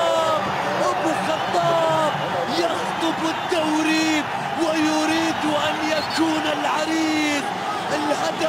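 A football commentator shouting in long, drawn-out calls, one after another, over the steady noise of a stadium crowd celebrating a goal.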